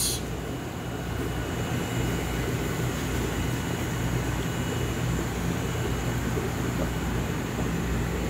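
Steady mechanical room noise: an even hiss over a low, constant hum, the running of the shop's machinery.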